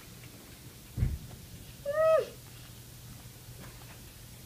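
A soft low bump about a second in, then a second later a short high-pitched vocal call that rises a little and falls away in pitch.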